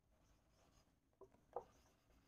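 Near silence, with the faint rub of a marker pen writing on a whiteboard.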